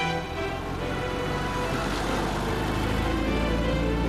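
Background music over a BMW 2002 driving past, its four-cylinder engine and tyre noise swelling about halfway through.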